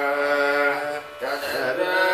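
A man singing a Carnatic vocal phrase in raga Kaapi, holding long sustained notes. The phrase breaks briefly about a second in, then resumes.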